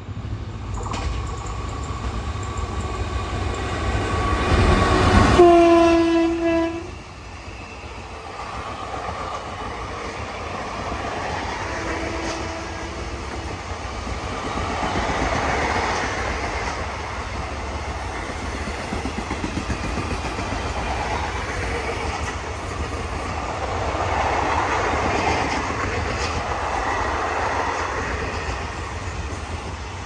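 Indian Railways electric locomotive sounding its horn as it approaches, loudest with a low blast about five seconds in and a second short blast about twelve seconds in. Then a steady rumble and clickety-clack of the passenger coaches running past.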